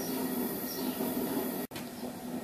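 Stout wort at a rolling boil in a brew kettle, a steady bubbling hiss that breaks off for an instant near the end.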